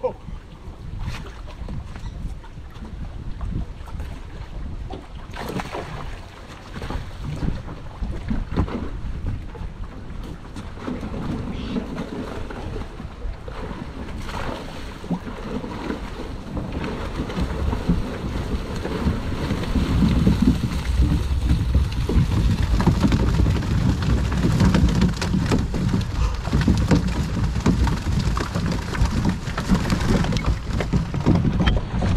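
Wind on the microphone and water splashing as a wet cast net is hauled back aboard a small skiff, with a few sharp knocks early on; the noise grows louder over the last ten seconds.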